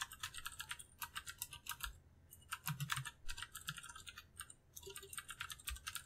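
Computer keyboard being typed on in quick runs of key clicks, with brief pauses about two seconds in and again past four seconds.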